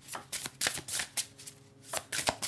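A deck of oracle cards being shuffled by hand, the cards slapping and flicking against each other in quick, irregular strokes, several a second.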